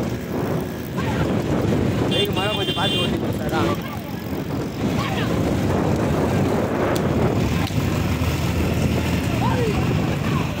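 Motorcycle and scooter engines running in a pack with wind noise on the microphone, and people shouting over them. A short high horn sounds about two seconds in.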